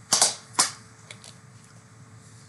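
Two short, sharp clicks about half a second apart.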